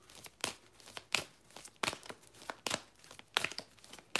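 Large oracle cards being handled and shuffled by hand: a quick run of crisp slaps and rustles, about two or three a second.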